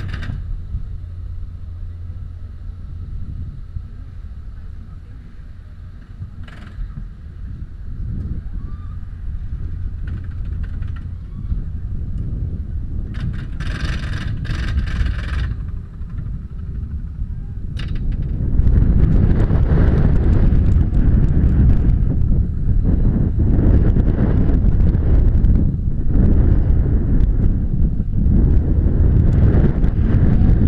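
Gerstlauer bobsled coaster train climbing the lift hill with a steady low rumble and a faint whine. About two-thirds of the way in it crests and runs down the track, and loud wind buffeting on the car-mounted microphone and the rumble of the wheels take over.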